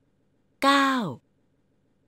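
Speech only: one short spoken word with falling pitch, about half a second long, with silence on either side.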